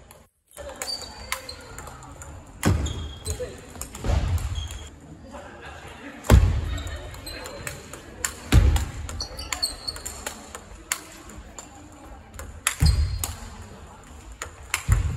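Large-ball table tennis rally echoing in a big hall: the ball clicking off the bats and the table again and again, with several heavier thumps along the way.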